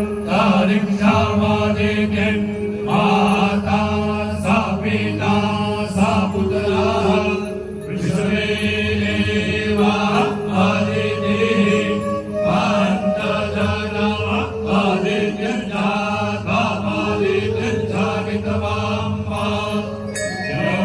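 Male Brahmin priests chanting Vedic Sanskrit mantras together through microphones, a steady recitation held on level pitches with short breaks for breath.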